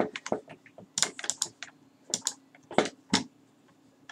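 Computer keyboard keys clicking in short, irregular runs as a number is typed in, close to a desk microphone.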